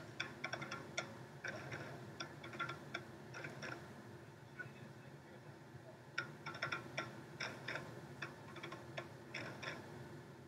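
Hand clapping in short rhythmic patterns: groups of sharp, fairly faint claps, with a lull of about two seconds in the middle before the clapping picks up again.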